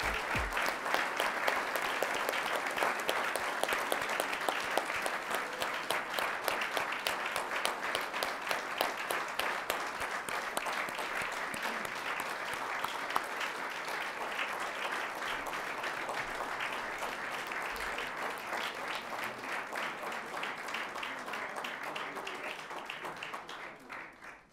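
Audience applauding: one long, even round of clapping from a room full of people that eases slightly and then stops near the end.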